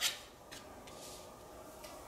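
Oracle cards being handled: a short swish as a card is drawn from the deck right at the start, then faint light taps as it is laid down on the table.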